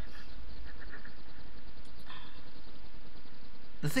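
Steady low hum with a faint hiss of background noise during a pause in talk, with one faint short sound about two seconds in; a voice starts speaking just at the end.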